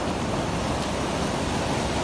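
Steady rush of muddy floodwater from a reservoir spillway overflowing about 26 cm deep across a concrete low-water crossing and cascading downstream.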